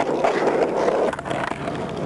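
Skateboard wheels rolling on rough asphalt, with clacks of the board during flatland freestyle tricks; the rolling noise drops off about a second in.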